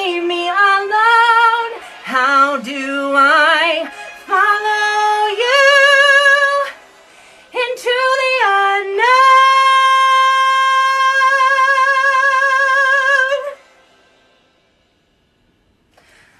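A woman singing wordless vocal runs with a wide vibrato, then one long high note held for about four seconds that cuts off suddenly.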